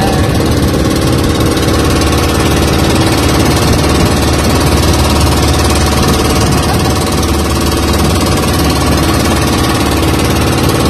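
Small engine of a motorized outrigger boat (bangka) running steadily under way, loud and unchanging.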